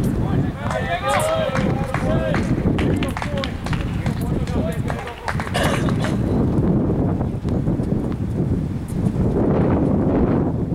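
Voices of players talking between points on an outdoor tennis court, strongest in the first few seconds, with scattered sharp taps of tennis balls bouncing and a steady low rumble underneath.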